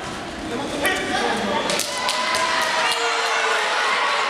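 Gloved punches and kicks landing on padded protective gear in a full-contact kung fu bout: a few sharp thuds, the clearest about one and two seconds in, over shouting voices from coaches and spectators.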